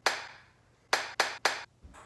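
Four sharp hand claps: one right at the start that rings on briefly, then three quick ones about a second in, roughly a quarter second apart.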